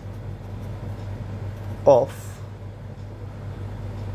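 Steady low hum of room noise under the light scratch of a felt-tip marker writing on paper, with one spoken word about two seconds in.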